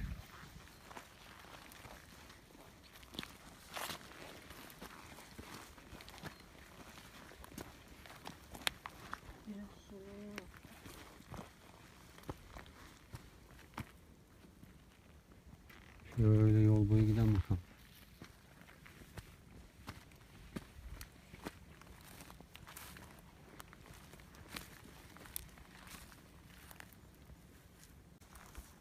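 Footsteps and rustling through dry grass and undergrowth, with irregular small clicks and snaps of twigs and brush. About sixteen seconds in, a man's voice gives one drawn-out sound lasting about a second and a half.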